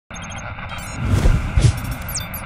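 Sound effects for a station logo intro: a quick run of short electronic beeps, then deep bass hits with whooshes from about a second in.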